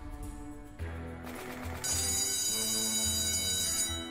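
Online slot machine game music with reel-spin sound effects, then a bell ringing out from about two seconds in.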